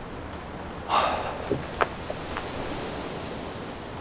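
A steady outdoor night hiss. About a second in comes a short breathy rush, then a few faint clicks and clothing rustles as a person settles back against a car.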